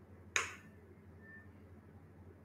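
A single sharp click about a third of a second in, over a faint low background hum.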